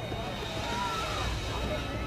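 Town-street crowd ambience: indistinct voices over a steady low rumble of background noise.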